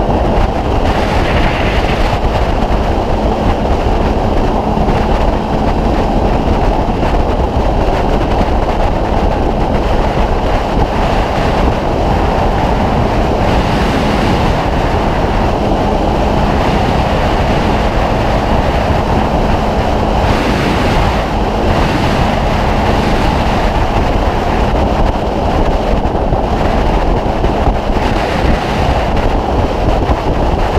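Honda CB600F Hornet motorcycle cruising at motorway speed, about 130 km/h: heavy wind noise on the microphone over a steady engine and tyre drone, with no change in pace.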